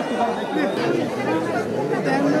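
Crowd chatter: several people talking at once, their voices overlapping at a steady level with no single speaker standing out.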